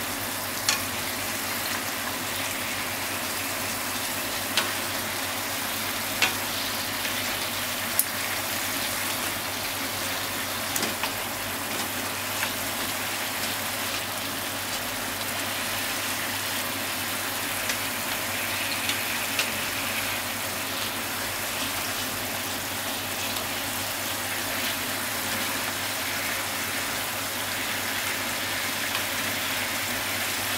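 Daikon radish steak slices sizzling steadily in a frying pan, with a few sharp clicks as chopsticks turn the slices against the pan.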